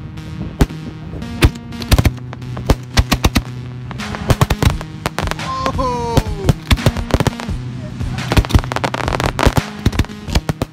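Aerial firework shells bursting, a dense run of sharp bangs and crackles, laid over a music track with held bass notes. Near the middle a falling tone sounds over the bangs.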